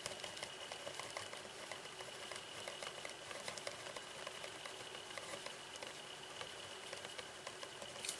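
Pen writing on paper: faint, quick scratches and small ticks as a line of handwriting is written.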